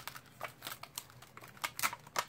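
Clear photopolymer stamps being peeled off their plastic carrier sheet and handled: a run of small, irregular clicks and crinkles.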